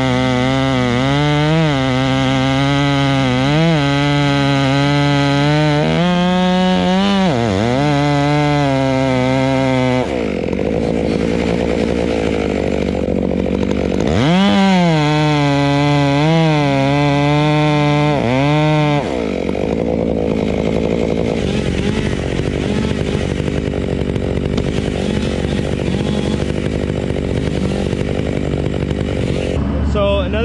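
Two-stroke chainsaw cutting the face notch into a large Douglas fir at full throttle, its pitch sagging and recovering under load. It drops off the cut about ten seconds in, revs back up around fourteen seconds for a second cut that ends near nineteen seconds, then runs on at a lower, less steady level.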